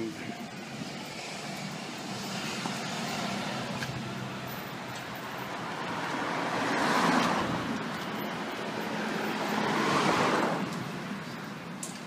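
Passing street traffic: the noise of two vehicles swells and fades, peaking about seven and ten seconds in, over a steady low hum.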